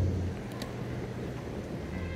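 Steady road traffic from cars running and moving slowly in a pickup lane, with two faint clicks about half a second in.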